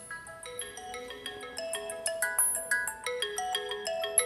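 Phone ringtone playing a quick melody of short, chiming notes.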